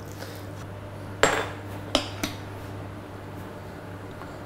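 Kitchen dishes and utensils knocking: one sharp metallic clink with a short ring about a second in, then two lighter knocks about a second later, over a low steady hum.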